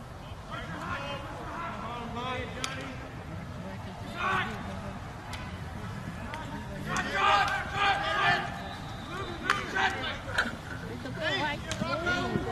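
Voices calling and shouting across an outdoor lacrosse field during play, louder and more frequent in the second half, with a few sharp clicks in between.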